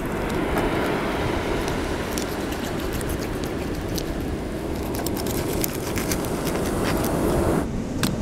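Steady wind noise on the microphone mixed with beach surf, with a few faint ticks of a fillet knife cutting through a mullet's scaly skin; it all stops abruptly near the end.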